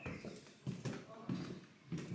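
Footsteps going down wooden stairs, an even knock about every two-thirds of a second.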